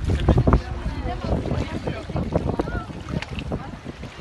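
Several people talking at once in the background, with wind buffeting the microphone in low rumbles.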